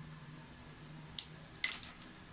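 Quiet room with one sharp click a little past halfway, then a short cluster of clicks and rustling near the end as a marker pen is picked up and brought to a paper pattern on a cutting mat.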